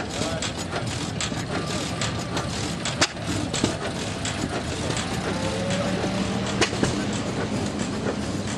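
Willys flat-fender Jeep driving slowly past at low engine speed, its engine note steady and getting a little louder after about five seconds, with people talking in the background.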